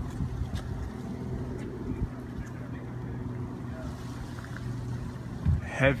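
Steady low hum of a motor running in the background, with a few faint clicks.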